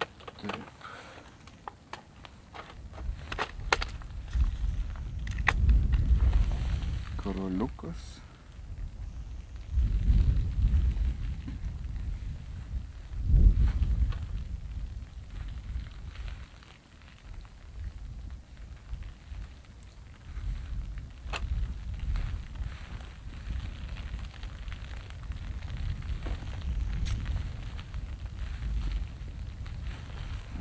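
Gusty wind buffeting the microphone: a low rumble that swells and fades several times. Scattered small clicks and rustles come from hands tying a fishing line rig.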